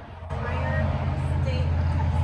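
A woman speaking over a steady low rumble that comes in about a third of a second in.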